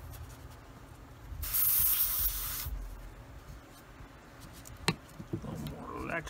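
Neo for Iwata TRN1 trigger airbrush spraying one short burst, just over a second long, of lacquer thinner onto a paper towel as it is flushed clean of leftover paint. A single sharp click follows about five seconds in.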